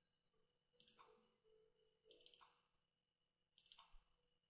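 Faint computer mouse clicks in three brief bursts, about a second and a half apart, over near silence.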